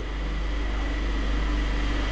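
Steady low hum with a faint even hiss, the background noise of the room.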